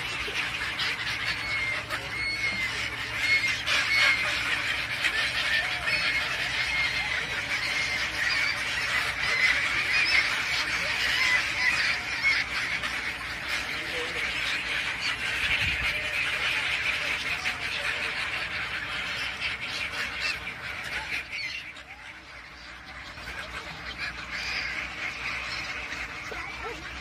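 A large flock of gulls calling constantly, many overlapping harsh cries, the din easing briefly about three-quarters of the way through.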